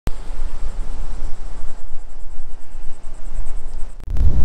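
Outdoor ambience opening with a click: wind rumbling on the microphone in uneven gusts, with a faint high chirping that repeats several times a second.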